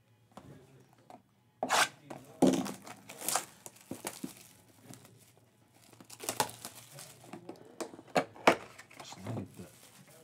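Plastic wrapping being torn and crinkled off a sealed trading-card hobby box, then the cardboard box opened. The crackling comes in irregular bursts starting about a second and a half in.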